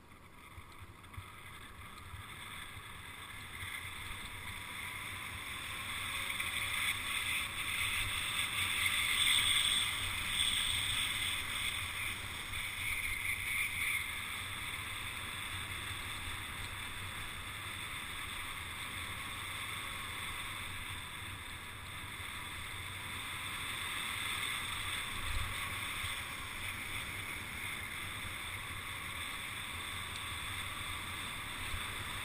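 Steady rushing noise of a mountain bike descending a paved road at speed: wind over the camera's microphone and tyres rolling on asphalt. It builds over the first several seconds as the bike gathers speed, then holds steady.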